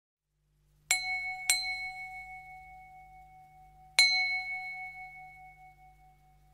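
A bell-like metal percussion instrument struck three times, twice in quick succession about a second in and once more about four seconds in. Each strike rings out in a long, clear tone that fades slowly.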